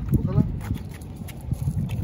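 A small child's short wordless voice sounds, over the clatter of a plastic push tricycle rolling on a concrete sidewalk and footsteps.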